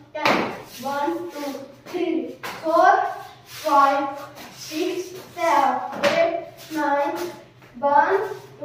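A person's voice calling out the dance's beat in short chanted syllables in a steady rhythm, with a sharp hit near the start and another about six seconds in.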